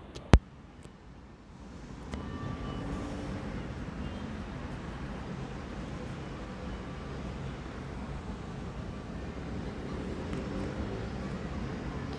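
A single sharp click as the detachable mic's plug is pushed into the earphone's jack. From about two seconds in, a steady low rumble of distant city traffic follows.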